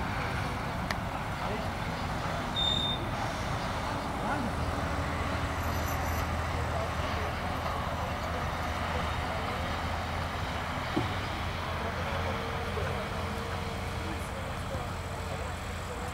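Distant road traffic heard across an open field: a steady background hiss with the low drone of a truck engine that swells about four seconds in and fades again by about twelve seconds.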